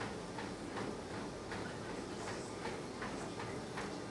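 Steady room noise with faint, regular ticks, about two or three a second.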